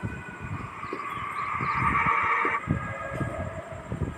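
An eerie sound effect: several high tones held steady over a low crackling rumble, swelling and then cutting off about two and a half seconds in, with a fainter tone lingering after.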